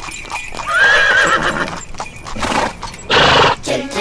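Cartoon horse sound effects: hooves clip-clopping and a horse neighing with a wavering call about a second in, then a loud rushing burst shortly before the end.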